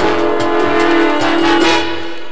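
Jazz trombone ensemble holding a long sustained chord over a steady drum beat, with the chord changing near the end.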